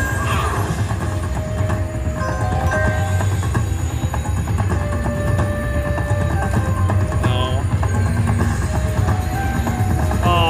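IGT Shadow of the Panther video slot machine playing its free-games bonus music and tones as the reels spin, over a steady low casino hum.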